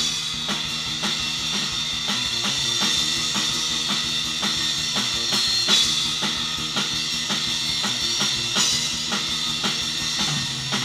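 Rock band playing live: a drum kit keeping a steady, even beat on kick and snare under cymbal wash, with sustained electric guitar and bass guitar notes underneath. A louder cymbal accent comes about halfway through.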